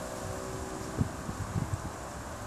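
Outdoor wind noise on the microphone, with a couple of low bumps about a second in and again shortly after.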